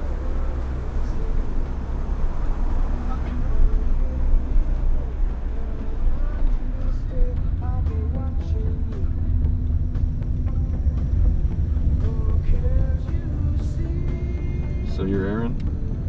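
Steady low rumble of a car's engine and road noise, heard from inside the cabin while driving.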